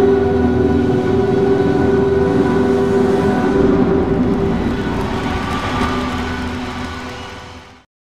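The closing of a film trailer's soundtrack: a held low orchestral chord over a deep rumble, fading out shortly before the end.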